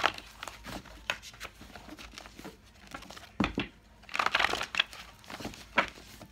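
A sheet of paper being handled, crinkling and rustling in irregular bursts, busiest about three and a half to five seconds in.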